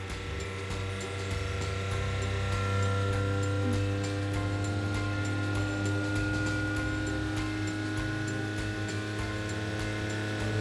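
Steady hum of a SeaWater Pro watermaker's running pumps while the high-pressure valve is slowly backed off to relieve system pressure. Background music plays over it.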